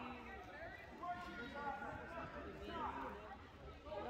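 Speech only: indistinct voices of people talking in a gymnasium, with no other clear sound.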